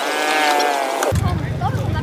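A held, slightly wavering pitched call or tone lasts about a second. It is followed by the low, even rumble of motorcycle engines idling.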